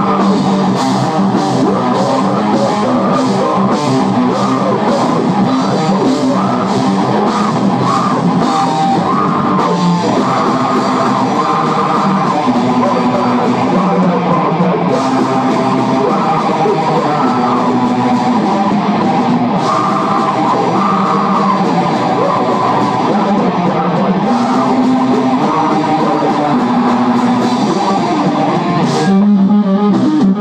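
Metal band playing live: distorted electric guitar, electric bass and drum kit, loud and steady, rising a little near the end.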